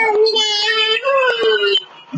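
A high-pitched voice singing long, wavering held notes on sung syllables, breaking off just before the end.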